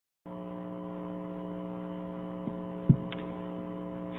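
Steady electrical hum, several steady tones at once, starting a quarter second in, with a single short thump near three seconds in.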